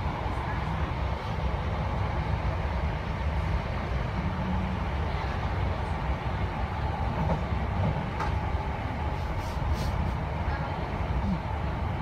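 Interior running noise of a Class 319 electric multiple unit on the move: a steady rumble of wheels on rails, with a few sharp clicks in the second half.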